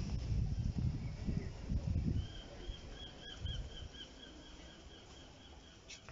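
A low rumbling noise for the first two seconds, then a rapid run of short high chirps, about four a second, lasting about three seconds.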